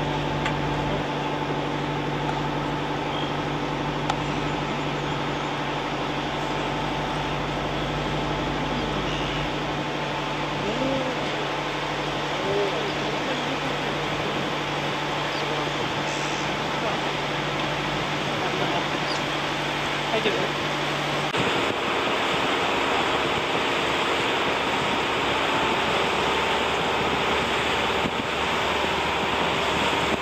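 Tour boat's engine running steadily with a low hum, under a steady rushing noise, with faint voices. About two-thirds of the way through the hum drops away and the rushing noise grows a little louder.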